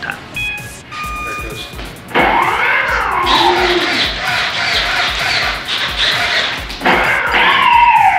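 Electronic speed controllers beeping briefly, then the B-17 model's four electric motors and propellers spinning up with a whine that rises and falls as the throttle is worked, swelling again near the end: a first bench test of the motors after binding the receivers.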